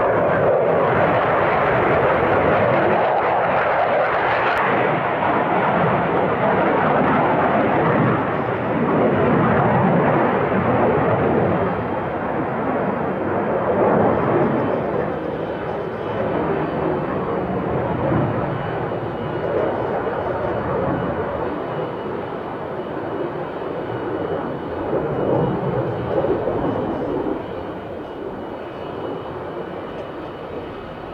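Military jet engine noise from an F-15, a loud steady rush that slowly fades over the second half.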